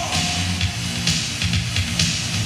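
Loud live rock band music with a pounding beat and a dense, distorted sound, the vocals pausing.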